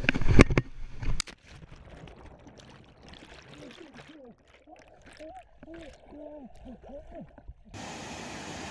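Cliff jump into a pool heard from a head-mounted camera: a rush and scuff at the push-off, a splash as the jumper hits the water about a second in, then a muffled underwater stretch of bubbling with faint rising-and-falling tones, until the sound changes abruptly as the camera breaks the surface near the end.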